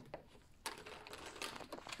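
Faint handling noise: a series of light clicks and rustles, growing more frequent about halfway through, from a plastic wipes tub and a plastic packet of detergent wipes being handled with gloved hands.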